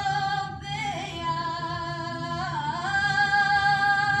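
A girl's high voice singing unaccompanied, holding long notes with sliding ornaments between them, over a faint steady low hum.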